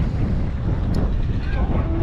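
Wind buffeting the microphone in a steady low rumble.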